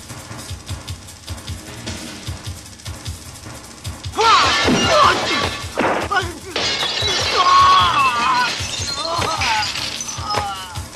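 Film soundtrack: music with a steady drum beat, then about four seconds in a loud crash of shattering glass and loud cries and screams over the music.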